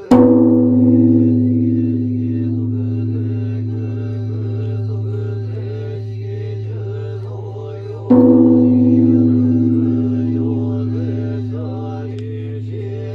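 Kenchō-ji's great Japanese temple bell (bonshō), struck twice about eight seconds apart with its swinging wooden beam for the New Year's Eve joya no kane. Each stroke starts with a sharp clang and settles into a deep, long-decaying ring with a pulsing hum.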